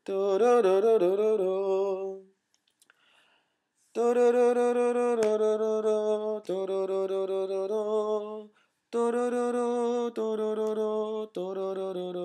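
A man singing wordless short phrases in a major key, establishing the tonality. A wavering first phrase is followed by a pause, then two runs of held notes changing pitch every second or so.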